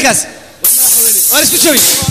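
A loud, steady hiss that starts abruptly about half a second in and lasts about a second and a half, with short bits of a man's voice over its second half.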